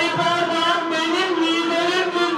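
A song with a voice holding one long, wavering note over accompaniment.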